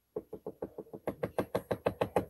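A small plastic pot of yellow paint knocked rapidly and evenly against the table, about seven knocks a second, to get the paint out.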